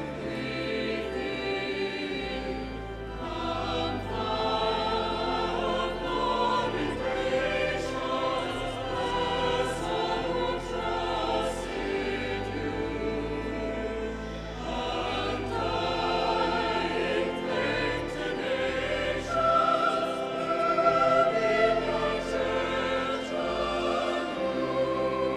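Choir and congregation singing a hymn over sustained pipe organ chords, filling a large reverberant cathedral, with a swell about three-quarters of the way through. It is the recessional hymn as the archbishop processes out at the close of Mass.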